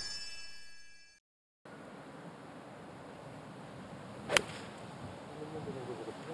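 A broadcast transition sting: a whoosh fading out under several high ringing chime tones that stop abruptly about a second in. After a moment of dead silence, quiet outdoor ambience is heard. About four seconds in, a single crisp click of a golf club striking the ball on a full approach shot rings out.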